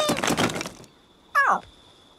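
Cartoon sound effect of a tall stack of wooden sticks toppling, a quick burst of many clattering knocks as they scatter, followed about a second and a half in by a short, steeply falling groan of disappointment.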